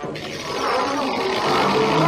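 Cartoon sound effect of a burst of fire from a creature: a loud, noisy rush that starts suddenly and swells a little, with a low steady tone beneath it.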